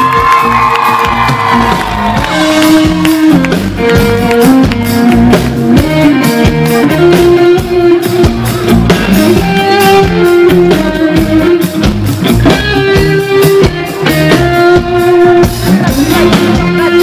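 Live rock band playing loudly: an electric guitar carries the melody in held, changing notes over a steady drum beat.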